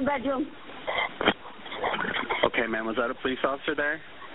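Indistinct speech on a recorded 911 emergency call, with the narrow, thin sound of a telephone line.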